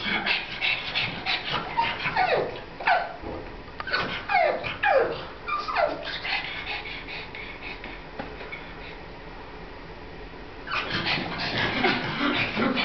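Pug whining at the top of the stairs in a series of short, falling cries, a sign of fear of the unfamiliar staircase. Bursts of quick clicking sounds come at the start and again near the end.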